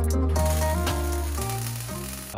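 Electric welding arc sizzling steadily as a steel part is tack-welded, starting about a third of a second in, over background guitar music.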